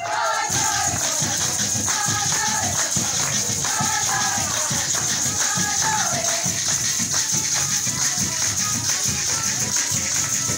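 Venezuelan Christmas parranda music: many maracas shaken in a steady rhythm over a hand drum and a strummed cuatro. Voices sing short phrases through the first six seconds or so, and then the instruments carry on alone.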